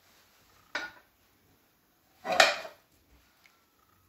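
A frying pan and a ceramic plate knocking together as a Spanish omelette is flipped out of the pan onto the plate: a short clink just under a second in, then a louder clatter about two and a half seconds in.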